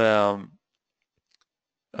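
A man speaking Romanian holds a drawn-out syllable that trails off about half a second in. Near silence follows, with one faint click, and he starts again with a hesitant "uh" at the very end.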